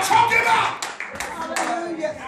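People's voices calling out in worship over hand-clapping, with a few sharp claps about a second in.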